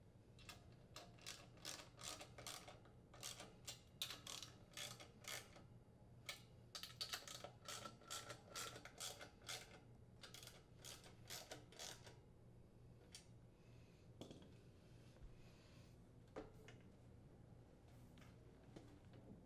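Faint clicking of a 5/16-inch socket ratchet tightening the fan motor's mounting nuts onto their studs, a quick run of clicks in bursts for about twelve seconds, then a couple of soft knocks.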